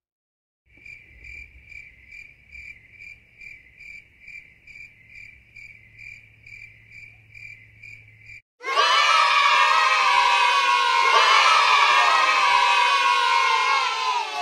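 A cricket chirping steadily, about two chirps a second, for most of the first half. Then a loud crowd of children shouting and cheering breaks in suddenly and carries on to the end.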